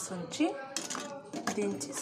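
A metal spoon clinks and scrapes against a metal cooking pot while stirring a thick tomato curry, with a woman talking over it.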